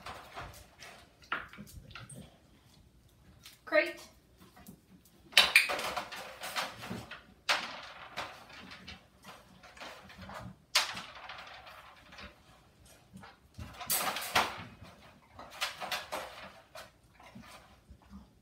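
Wire dog crate rattling and clinking as its metal door is swung and handled, with a large dog shifting about inside the crate. Several longer rustling bursts break in during the middle and latter half, and a short rising pitched sound comes about four seconds in.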